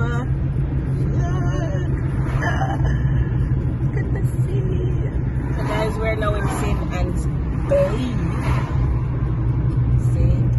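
Steady road and engine drone inside a moving car's cabin at highway speed. Faint, indistinct voices come and go over it.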